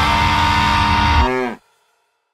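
Heavy hardcore/noise-rock band ending a song on a loud sustained chord with a held high guitar note. About a second and a quarter in, the whole chord drops in pitch, then cuts off suddenly.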